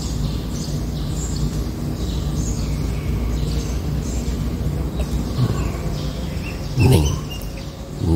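Small birds chirping, short high calls repeated every second or so, over a steady low hum.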